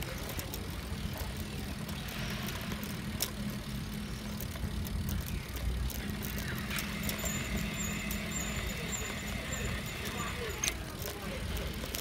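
Bicycle rolling over brick paving: a steady low rumble of tyres and wind on the microphone, with scattered small rattles and clicks. About halfway through, a faint high chirping joins in.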